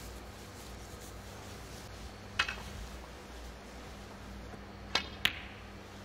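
Snooker balls clicking in a quiet match arena: one click about two and a half seconds in, then two sharp clicks close together near the end, over a faint steady hum.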